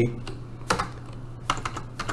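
Computer keyboard typing: a few separate keystrokes, spaced irregularly, as a line of code is finished and a new one begun.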